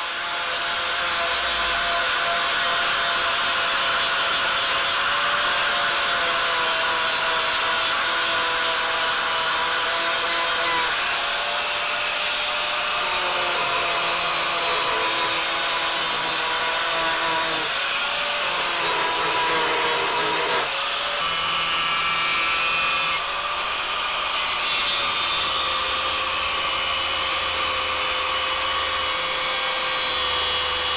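Angle grinder with a sanding disc running steadily against a steel weed-slasher blade, stripping its paint down to bare metal. The motor's whine dips briefly in pitch several times, with a couple of short drops in loudness past the middle.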